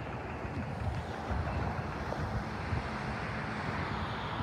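Wind buffeting the microphone over the low, steady noise of a double-deck electric intercity train, a Sydney Trains Oscar H set, drawing slowly toward the station, growing slightly louder.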